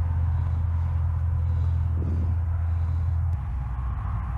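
Steady low outdoor rumble with a soft airy puff about two seconds in from a bee smoker's bellows; the rumble shifts shortly before the end.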